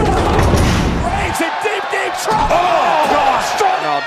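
A loud low rumble with crashing noise for the first second and a half, then excited shouted exclamations with several sharp smacks.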